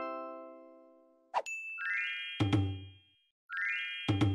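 Video-editing sound effects. A bright synthetic chime chord fades out over the first second, and a short swish follows. Then a bell-like ding with a low thud under it sounds twice, about 1.7 s apart.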